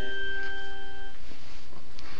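Children's electronic toy keyboard sounding several held notes together, which stop one after another within the first second or so, leaving a steady hiss.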